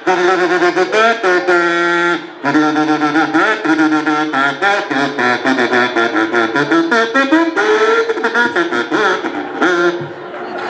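Live band playing: a brass horn carries a melody of long held notes over drums and electric bass, with a brief drop in loudness about two seconds in.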